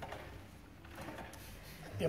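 A quiet pause in double bass playing: the last of a bowed bass note fades away at the start, leaving faint room noise.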